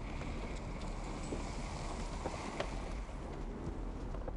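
Steady road and engine noise inside a moving car's cabin, a low rumble with a few faint clicks.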